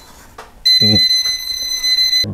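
Milwaukee non-contact voltage detector pen sounding a steady high-pitched beep, starting under a second in, as its tip is held at a live wire: it is detecting voltage.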